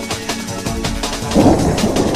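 Electronic music with a steady beat, joined about a second and a half in by a loud noisy rumble of thunder with rain.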